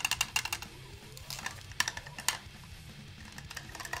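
Axis Longboard bass drum pedal worked by hand, its footboard heel hinge clicking and clacking with play, metal on metal: the plastic washers that raise the heel plate have broken, so it grinds against itself. A quick run of clicks comes first, then a few single clicks about two seconds in.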